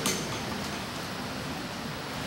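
Steady background room noise, with a short click right at the start.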